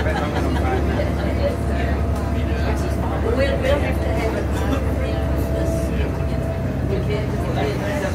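Bus engine and road noise heard from inside the cabin while the bus drives along, a steady low rumble, with people talking indistinctly over it.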